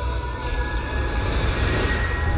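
Logo-sting sound design: a dense, hissing, metallic swell with several sustained high tones over a steady low drone, building toward the end.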